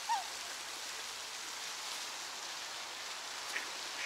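Steady splashing hiss of a pond fountain's spray, with a short falling call right at the start.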